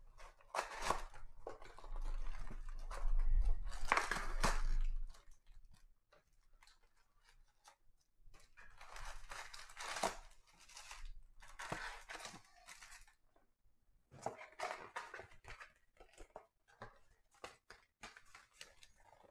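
A cardboard box of trading cards being torn open, a loud ripping and crunching in the first five seconds, then the wrapped card packs rustling and crinkling as they are pulled out and set down in stacks, with scattered light taps.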